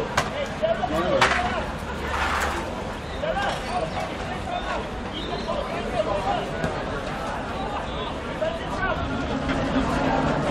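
Scattered shouts and calls from rugby players and sideline onlookers, with general crowd hubbub, and a sharp knock about a second in.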